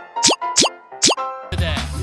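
Three quick, rising cartoon 'pop' sound effects, one for each emoji appearing, followed about a second and a half in by a song clip with a steady beat starting.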